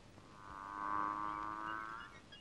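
Background film music: a sustained chord swells in shortly after the start, peaks about a second in and fades toward the end.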